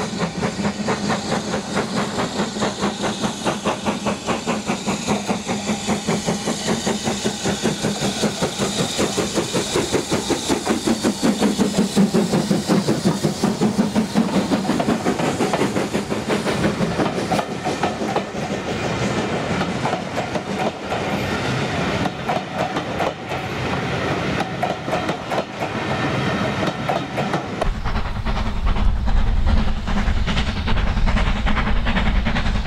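BR Standard Class 4 2-6-4 tank locomotive 80097 working a train: rapid, steady exhaust beats with steam hiss, and coaches clattering over the rail joints. A deep rumble comes in near the end.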